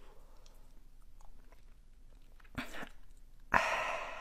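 Faint wet mouth sounds as wasabi paste is squeezed from a tube into a man's mouth. Near the end come a short huff and then a louder strained, breathy exhale with the mouth wide open, a reaction to the wasabi's heat.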